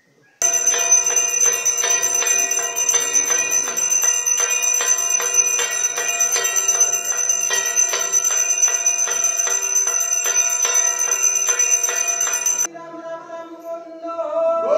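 Brass puja hand bell rung continuously in a quick, even rhythm for aarti, bright and metallic with many overlapping ringing tones. It stops abruptly near the end, leaving a fainter ringing.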